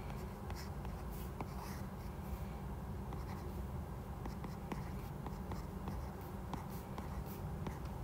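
Stylus writing on a tablet screen: faint scratchy strokes and light taps as letters are drawn, over a steady low hum.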